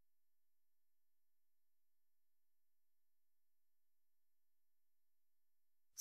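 Near silence, with only a very faint steady electronic hum.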